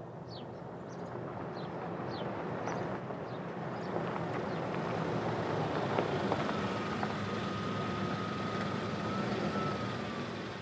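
Suzuki SUV driving slowly along a dirt track and pulling up, its engine hum growing louder as it approaches. A faint steady high tone joins in from about six seconds in.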